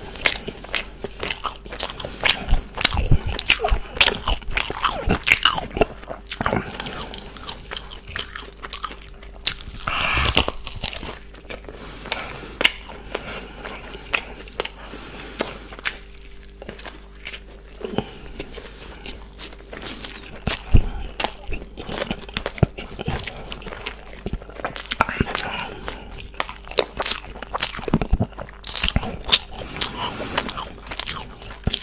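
Close-miked biting and chewing of a breaded fried chicken burger: many sharp crunches from the crispy coating, mixed with wet mouth sounds, thinning out briefly in the middle.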